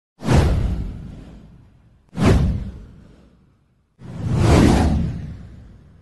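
Three whoosh sound effects of an intro title animation. The first two start sharply about two seconds apart and fade away; the third swells up over about half a second and then fades slowly.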